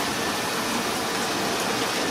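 Water splashing steadily into a fish tanker truck's compartment, carrying brown trout fingerlings in from the fish pump's outlet pipe.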